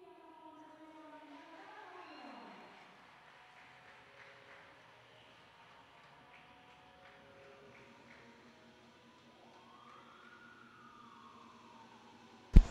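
Near silence: faint room tone with faint distant tones, one sliding down about two seconds in and another rising and falling near the end.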